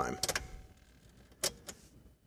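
Car ignition key being turned in its lock cylinder: a few quick light clicks just after the start, then two sharper clicks about a second and a half in.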